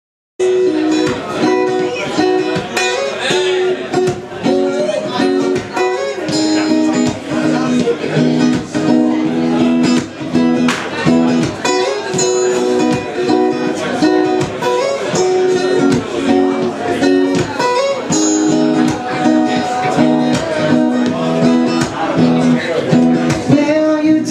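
Guitar playing a song's instrumental introduction live, chords strummed in a steady rhythm.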